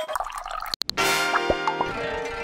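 Title-card music: a short break just before a second in, then a held chord comes in with short bubbly blips over it.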